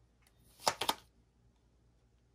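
Tarot cards being handled: two quick sharp card clicks, close together a little over half a second in, as a card is drawn from the deck.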